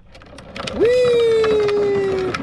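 A long drawn-out "whee!" shout, its pitch sliding slowly down, over the rumble and clicking of a plastic Big Wheel trike's hard plastic wheels rolling down an asphalt driveway; the rolling noise builds from about a third of a second in.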